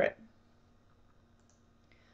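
Near silence: room tone with a faint steady hum, after a woman's last spoken word trails off at the very start, and a faint click near the end.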